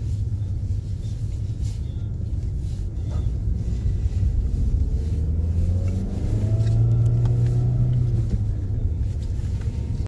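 A car driving, with steady low engine and road rumble; the engine note rises as the car speeds up about halfway through, and is loudest a little later.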